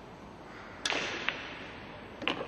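Pool cue tip striking the cue ball in a sharp click, then the cue ball clicking against an object ball about half a second later.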